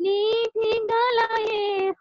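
A young woman singing solo without accompaniment, holding steady, sustained notes, with a short break about half a second in.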